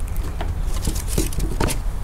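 Toy poodle puppy's paws pattering on wooden deck boards as it gets up and scampers off: a few light taps and scuffs, over a steady low rumble.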